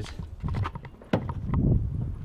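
Scattered light knocks and clicks, two of them sharper, a little past the middle.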